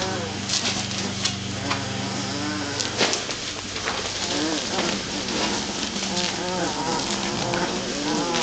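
Two-week-old Great Dane puppies whimpering and squealing in short rising-and-falling cries, with rustling as they squirm on the blanket. A steady low hum stops about a third of the way in.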